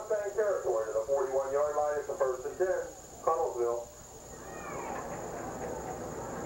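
A voice talks, not clearly enough to make out, for about the first four seconds. Then a steady background murmur continues.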